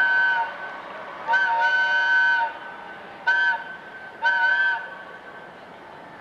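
A multi-note train whistle blowing a series of blasts. A long blast ends just after the start, then come a short blast and a long one, another short blast, and a last blast of about half a second.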